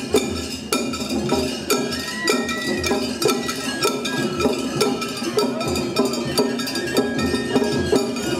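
Shagiri festival music played on a parade float: taiko drums and clanging metal hand gongs (kane) keep up a steady, driving beat.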